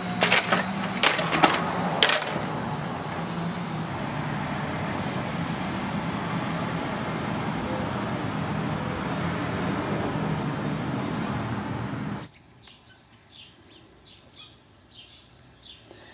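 Several sharp metallic clinks and knocks of copy-machine parts being handled as it is taken apart, followed by a steady, even noise lasting about ten seconds that stops abruptly. After it, faint bird chirps are heard.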